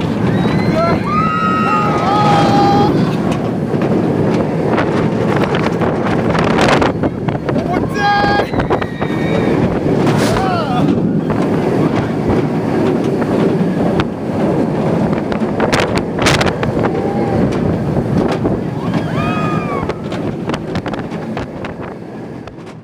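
Wind rushing over the microphone of a rider on a moving roller coaster, with riders screaming over it several times. The rush fades near the end.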